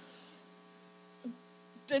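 Faint, steady electrical hum: a low buzz with several even overtones, heard in a pause between words. A brief voice sound comes about a second in, and a spoken word starts at the very end.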